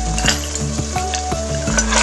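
Curry sauce of coconut milk at the boil in a wok, bubbling and sizzling with many small pops, under background music with a slow stepping melody.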